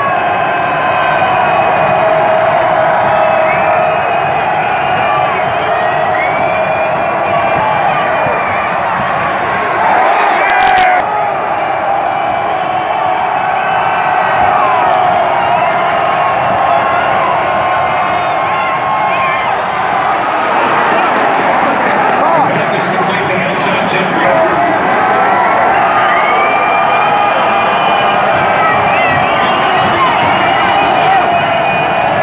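Football stadium crowd: a steady din of many voices, with nearby fans talking and shouting over it. A brief sharp sound cuts through about ten and a half seconds in.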